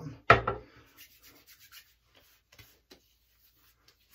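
A sharp click or knock just after the start, then hands rubbing post-shave balm into the skin of the face, a soft rubbing that fades within about two seconds.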